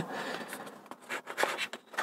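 Light rubbing and scraping of a small cardboard box as a device is slid out of it, with a few faint short scrapes in the second half.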